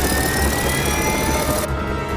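Helicopter-mounted six-barrel rotary minigun firing a continuous burst with a rising whine, cutting off suddenly near the end.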